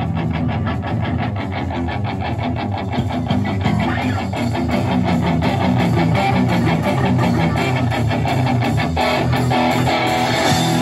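Live rock band playing an instrumental passage: electric guitars strummed over bass guitar and drums in a steady rhythm.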